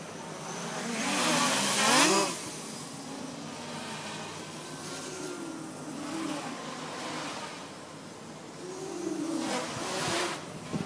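Armattan 290 quadcopter's brushless motors and propellers buzzing, the pitch wavering up and down as the throttle changes. The sound swells loudest about two seconds in, and again near the end.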